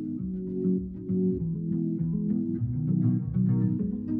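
Background music led by plucked guitar over a bass line.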